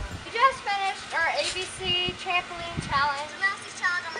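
Young girls' high-pitched voices singing and calling out in short phrases that slide up and down in pitch.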